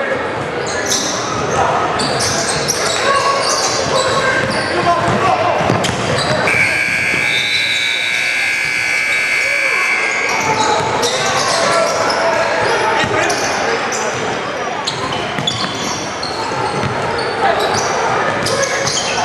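Basketball game in a gym hall: spectators' voices and a basketball bouncing on the court, with a scoreboard buzzer sounding once, a steady tone lasting about three and a half seconds, partway through.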